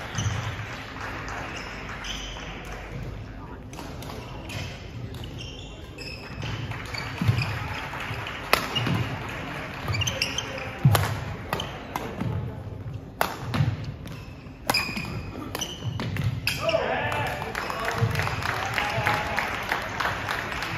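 Badminton rally on a wooden sports-hall floor: sharp racket hits on the shuttlecock, mostly about every two seconds, with shoes squeaking and feet thudding as the players move. Voices from people in the hall, louder near the end.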